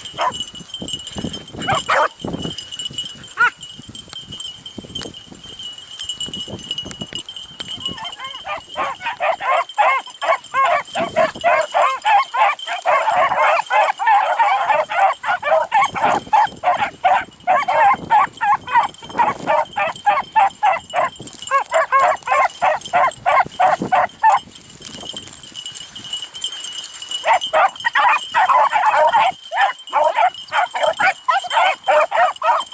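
A pack of beagles baying on a rabbit's trail, many hound voices overlapping in a running chorus. The cry is scattered at first, goes continuous about a third of the way in, drops off for a few seconds, then picks up again near the end.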